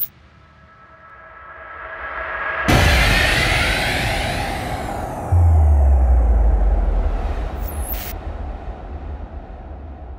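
Cinematic logo sting: a swell rises to a sudden hit about two and a half seconds in, with shimmering tones falling away, then a deep low boom about five seconds in that slowly fades.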